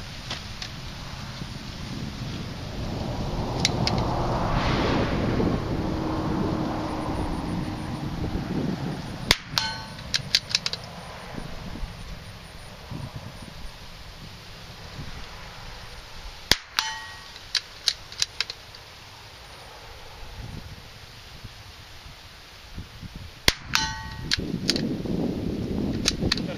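Three shots from a scoped .22 rimfire rifle, about seven seconds apart, each followed within half a second by a short metallic ringing clang, the sign of the bullet striking a steel target.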